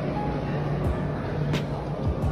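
Background music over a steady low rumble, with two short clicks partway through.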